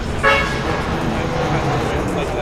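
A car horn gives one short toot about a quarter second in, over background chatter.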